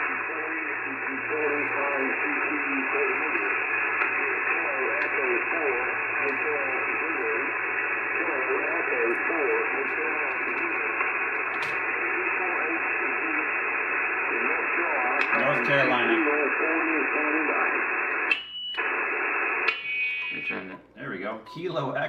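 HF amateur radio receiver audio on the 40-metre band: a distant single-sideband station's voice coming through a steady hiss of band noise, with thin, narrow audio and no highs. Near the end the signal drops out for a moment and a short whistle follows.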